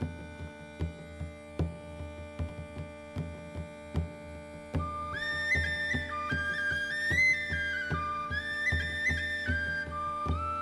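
Instrumental introduction of an Irish folk song: a steady low drone under a regular drum beat, about two beats a second. About five seconds in, a flute melody of held notes with slides enters over it and becomes the loudest part.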